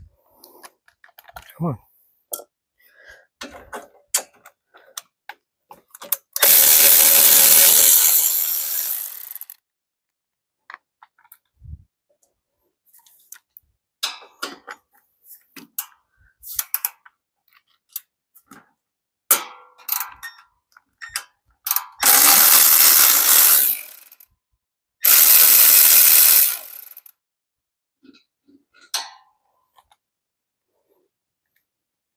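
Cordless electric ratchet spinning bolts out in three runs of two to three seconds each, with short metallic clicks and clinks of the socket and tools between the runs.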